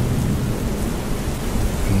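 Steady rain falling, with a low rumble underneath.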